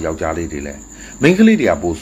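A man speaking Burmese in a monologue, with a steady high-pitched cricket trill running behind the voice.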